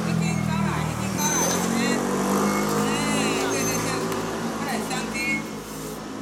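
A motor vehicle engine running nearby, its pitch rising slowly over several seconds, with voices in the background.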